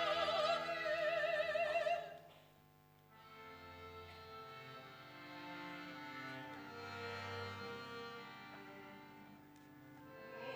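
A woman's operatic voice holding a high sung note with wide vibrato, which ends about two seconds in. After it, soft held notes from bowed strings carry on quietly, shifting slowly from chord to chord.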